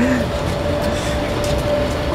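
Vehicle engine running close by, a steady low rumble with one steady thin tone held above it.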